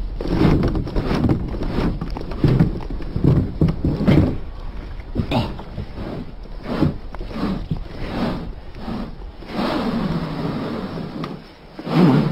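Plastic kayak hull scraping and knocking along a plastic grated launch ramp in irregular shoves.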